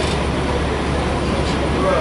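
Steady low rumble of city street traffic, with buses running at the curb, under faint talk.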